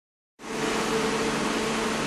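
A steady mechanical whir with a low hum, starting about half a second in.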